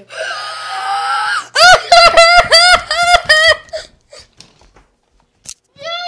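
A girl's loud, high-pitched shrieking laughter in quick repeated bursts, preceded by a breathy drawn-out cry of about a second and a half.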